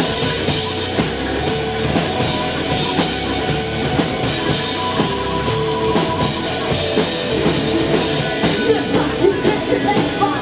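Live heavy rock band playing: electric guitar, bass guitar and drum kit, the drums striking about twice a second and growing busier near the end.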